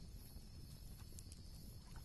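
Near silence: a faint low background rumble with a thin steady high tone and a few soft ticks.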